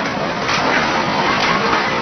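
A barbecue grill fire burning with tall flames: a steady rushing noise with no clear pitch.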